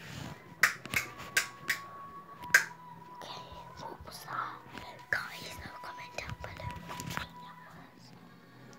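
About five sharp clicks in the first three seconds, then whispering, over a faint steady high tone.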